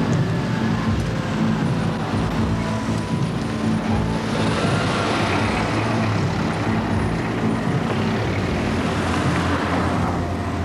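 Car engine running steadily amid street traffic noise, a low even hum with a wash of road noise that grows a little about four seconds in.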